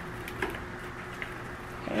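Hands tossing and flipping seasoned raw pork chops in a glass bowl: faint handling of the wet meat, with a light click about half a second in.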